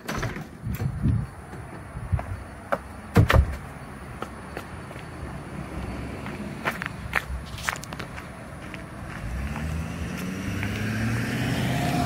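A door being handled, with clicks and a loud thud about three seconds in, then footsteps on pavement. From about nine seconds in a passing pickup truck's engine hum grows steadily louder.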